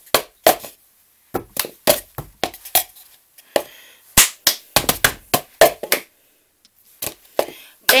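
Cup-song rhythm played with a foam cup on a wooden table: hand claps, table taps and the cup knocked down onto the tabletop in short bursts that stop and start again several times.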